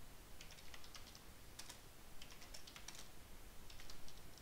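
Computer keyboard typing: a few short runs of faint, light key clicks as terminal commands are entered.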